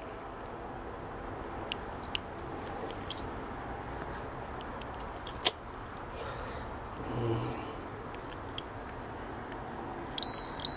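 Faint steady background hiss with a few small sharp clicks from handling an ESR meter and its alligator-clip test leads while hooking up a capacitor, the sharpest click about five and a half seconds in. A brief faint low murmur comes a little after seven seconds.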